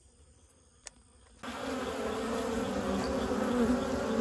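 Close-up buzzing of a queenless cluster of honey bees flying around the entrance of a wooden box. The buzz starts suddenly after about a second and a half of near silence and then holds steady.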